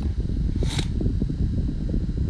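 Steady low rumble, like a fan or background hum, with a brief hiss about three-quarters of a second in.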